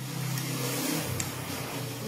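A steady rushing noise with one small sharp click about a second in, as the wire clasp of a swing-top glass bottle is flipped open.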